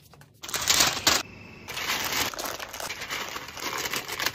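Paper and plastic packaging crinkling and rustling as orders are packed by hand: a loud burst of rustling about half a second in, then steadier crinkling.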